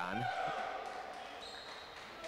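Courtside sound of a basketball game in a near-empty arena, with a drawn-out high tone that fades over about a second.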